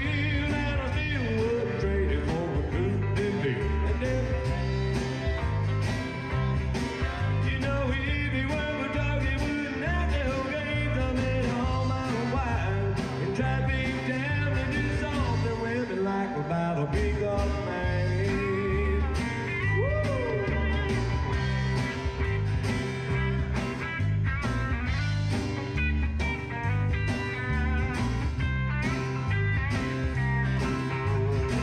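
Live band playing amplified rock: drums, bass and electric guitars with a steady beat.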